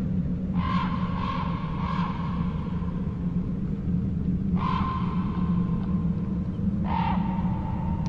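Crow cawing over a steady low rumble: three caws in quick succession about half a second in, a single caw about four and a half seconds in, and another near seven seconds.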